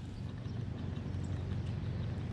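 Small fishing reel being cranked on a retrieve: a steady low whirr from its gears with faint regular ticking.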